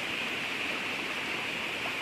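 Steady rush of flowing stream water running over rocks.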